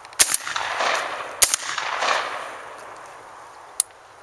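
Two shots from a Savage 745 semi-automatic 12-gauge shotgun, about a second and a quarter apart. Each is followed by a long echo that fades over a couple of seconds.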